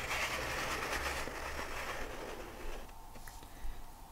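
Pen nib drawing on paper around a plastic circle stencil: a steady hiss that fades away about two and a half seconds in.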